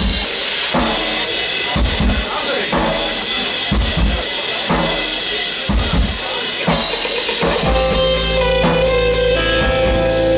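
Live rock band playing: a drum kit beats out a rhythm, mostly on its own at first. About three-quarters of the way in, bass and sustained keyboard and electric guitar notes join the drums.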